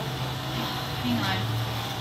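A steady low hum of room noise, with a brief voice sound a little over a second in.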